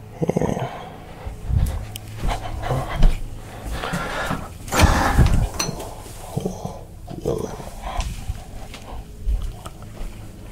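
Microphone or recording setup being handled and adjusted: irregular bumps, rustles and clicks over a steady low hum, while the sound problem is being fixed.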